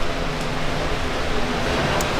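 Steady rushing background noise with a fluctuating low rumble, no distinct events.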